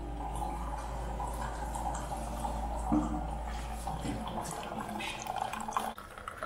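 Single-serve K-cup coffee brewer brewing a 10-ounce cup: a steady low hum from the machine, with coffee streaming into the mug.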